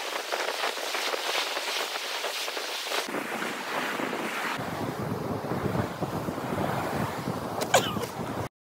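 Ocean surf washing onto a beach, a steady rush of waves, with wind buffeting the microphone from about halfway through. A brief high-pitched sound near the end.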